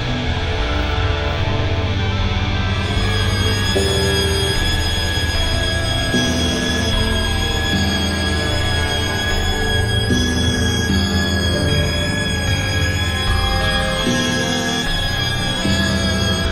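Experimental electronic synthesizer music: a dense, steady drone with a heavy low bass, long-held high tones above it, and short held notes that step to new pitches every second or so.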